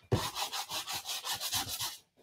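220-grit sandpaper rubbed quickly back and forth over the edge of a painted, paper-covered tin, in short even strokes about eight a second, distressing the decoupage edge.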